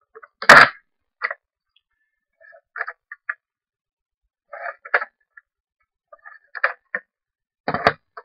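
Something being opened by hand: a loud snap about half a second in, then scattered short clicks and crinkles as it is worked open.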